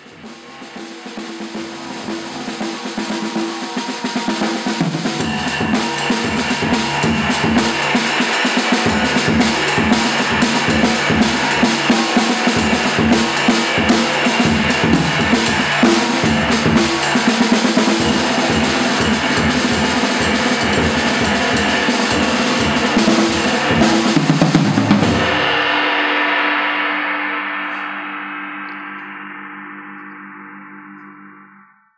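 Jazz drum kit played with sticks: it starts soft, builds within a few seconds into busy playing across snare, bass drum, toms and cymbals, then stops with a last hit about 25 seconds in and rings out, fading away.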